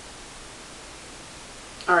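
Steady hiss of room tone and recording noise with no other sound, then a woman's voice starts a word near the end.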